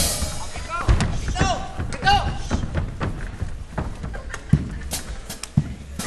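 Scattered thuds of performers' bodies and feet on a stage floor: a sharp thud at the start, another about a second in and a couple more near the end, with brief shouts between them.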